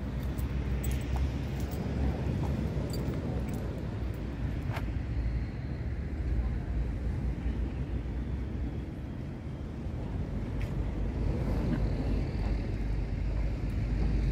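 Wind buffeting the microphone, a steady rumble with a few faint clicks.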